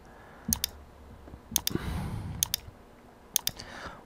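Computer mouse button clicking four times, about once a second; each click is a pair of sharp ticks, press then release, as edges are selected one after another.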